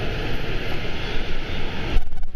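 Steady, loud rushing-water din of an indoor water park: water running and splashing in a large pool hall, with no clear single event.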